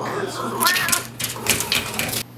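Two cats squaring off through a screen door: a drawn-out yowl that wavers up and down in pitch, followed by several sharp hisses near the end.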